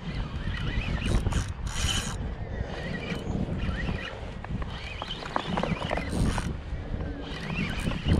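Shimano Spheros SW 6000 spinning reel being worked while a hooked bluefish is fought in, a mechanical winding sound over a steady low rumble of wind on the microphone.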